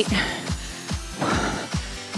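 Upbeat workout music with a steady, fast drum beat.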